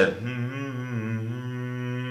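A man humming one long low note with his mouth closed. The note wavers slightly at first, then is held steady.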